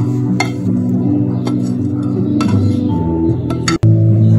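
Background music of held, steady tones, with a few light clinks of a utensil against a bowl as flour and paste are mixed. The sound drops out for an instant near the end.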